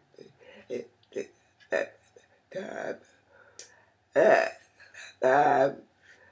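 A woman's voice making short, unclear vocal sounds rather than words: several brief syllables, then two longer, louder ones near the end.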